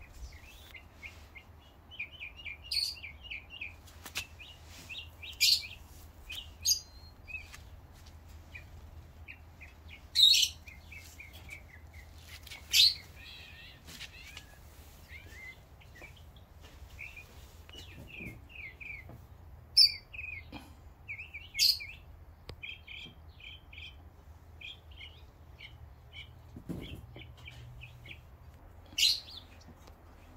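Birds chirping: quick runs of short, high chirps, with a handful of louder, sharper calls scattered through.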